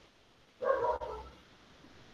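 A short pitched vocal-like sound about half a second in, lasting under a second, set in an otherwise quiet pause.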